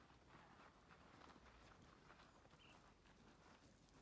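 Near silence, with faint, irregular footsteps on a rocky desert trail.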